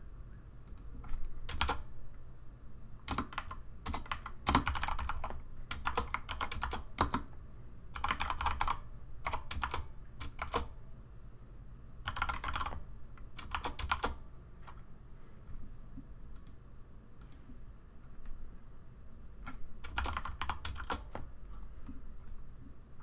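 Computer keyboard typing in short bursts of rapid keystrokes with pauses between them, the longest lull coming about two-thirds through before a last burst near the end.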